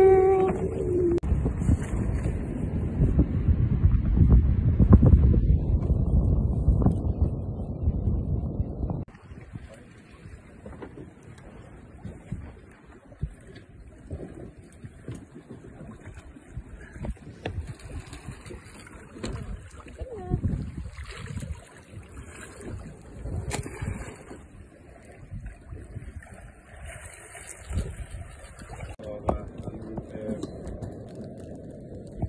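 Wind buffeting the microphone on a boat at sea, heavy for about the first nine seconds, then dropping suddenly to a quieter stretch of faint water sounds and voices.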